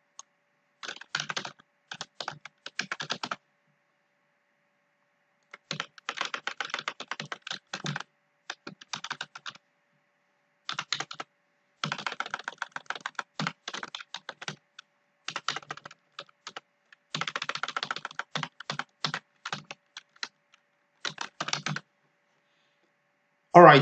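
Computer keyboard being typed on, the keys clicking in quick runs of one to three seconds with short pauses between, as lines of code are edited.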